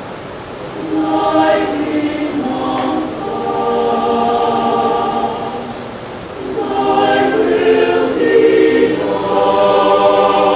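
Mixed-voice choir singing a prayer song in held, sustained chords. The phrases swell and fall back, with a softer breath about six seconds in before the voices build again.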